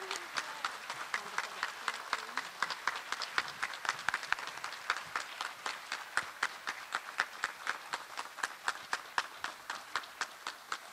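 Applause from a small audience: separate hand claps stand out one by one, several a second, slowly thinning toward the end.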